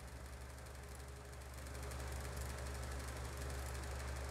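Desktop PC running as Windows restarts: a faint, steady low hum, a little louder from about halfway through.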